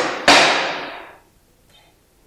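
A single sharp knock about a quarter second in, ringing out in the room and dying away over about a second.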